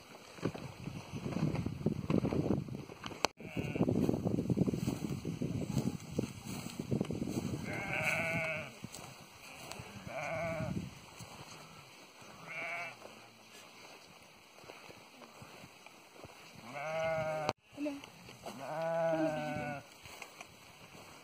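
Domestic sheep bleating, about five calls spread over the second half, the last two longer and louder, after several seconds of rough rustling noise.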